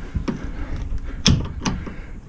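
Two-piece metal clamshell tow bar fitting being snapped over a tow bar: a couple of sharp metallic clicks a little over a second in, with lighter handling clatter around them.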